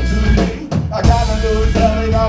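Garage punk band playing live: drums, guitar and vocals. The band drops out briefly about half a second in, then comes crashing back in after about a second.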